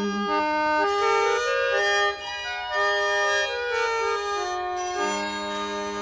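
Instrumental break in an English folk song: a squeezebox plays a stepping melody over sustained chord notes. The low held note drops out just after the start and returns about five seconds in.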